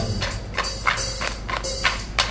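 Tap dancing in wooden geta clogs: a run of sharp clacks on the stage floor, about three a second, over thin backing music.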